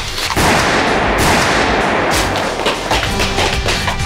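Dramatic background score with a sudden loud noisy hit about a third of a second in that fades out over about two seconds, followed by a few shorter strokes.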